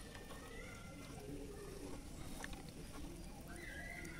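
Faint outdoor background: a low, steady hush with a few soft clicks and a thin held tone that rises slightly near the end.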